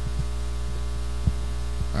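Steady electrical mains hum through a microphone and sound system, with one short knock just over a second in as the handheld microphone is handed over.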